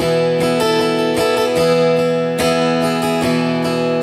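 Acoustic guitar strumming chords in a steady rhythm, the notes ringing on between strums.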